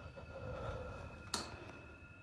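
Faint steady hum with a thin high tone, and a single sharp click a little over a second in.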